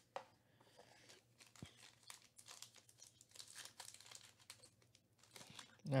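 Faint crinkling and rustling of a foil-wrapped trading-card pack being lifted out of its cardboard box and handled, a scatter of small crackles.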